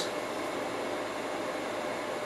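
Steady background hiss with no distinct events: room noise such as a fan or air conditioner.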